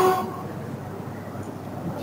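A pause between spoken sentences, filled with a steady low rumble of hall room noise, after a short pitched sound right at the start.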